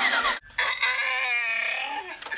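Electronic outro music cuts off with a falling glide under half a second in. After a short gap comes one long, wavering animal call with a rising and falling pitch: a llama call sound effect.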